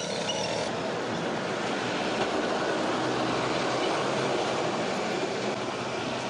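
Steady outdoor background noise: an even hiss with no distinct events. A few faint, short, high chirps come in the first second.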